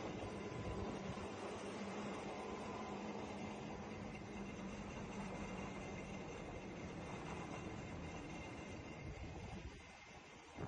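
Faint, steady driving noise of a vehicle in motion: a low rumble and hiss with a light hum, fading out near the end.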